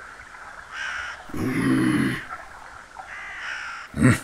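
Crows cawing, three calls: one about a second in, a louder, deeper one right after it, and a fainter one past the three-second mark.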